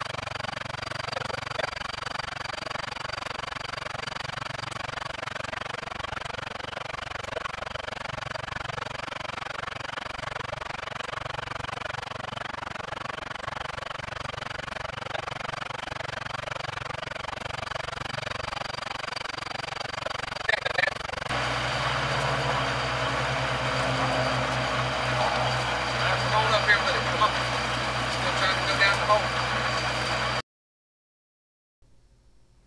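Truck-mounted well-drilling rig's engine running steadily while HDPE geothermal loop pipe is fed into the borehole. About two-thirds of the way in the engine sound grows louder and deeper, with a few light clicks.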